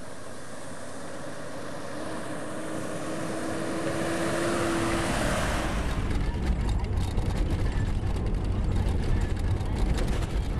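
A four-wheel-drive SUV approaching on a gravel road, its engine and tyre noise growing louder over the first five seconds. From about six seconds in comes the heavy low rumble and rattling heard inside the vehicle's cabin while it drives over rough ground.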